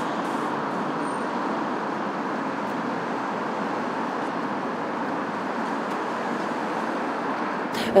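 Steady city street traffic noise, an even wash of passing cars with no single vehicle standing out.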